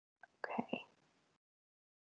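One short, softly spoken "OK" over a video-call line, with dead silence around it.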